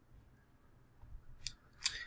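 Two sharp clicks of a computer mouse, about a third of a second apart, a second and a half in, over quiet room tone.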